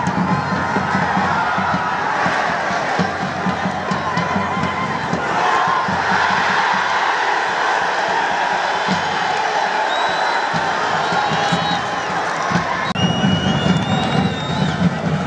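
Football stadium crowd cheering and shouting continuously, with music mixed underneath; the sound breaks off for an instant near the end.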